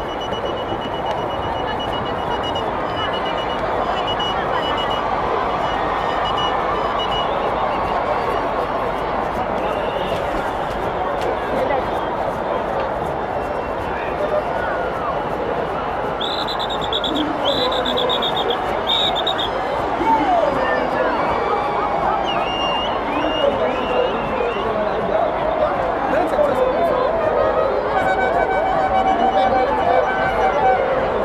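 Large stadium crowd of many voices singing and chanting together. Three short shrill whistle blasts or ululations cut through a little past halfway.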